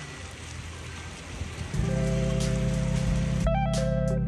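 Small fountain jets splashing into a shallow pool, a soft steady patter of falling water. About two seconds in, louder background guitar music with held chords starts over it.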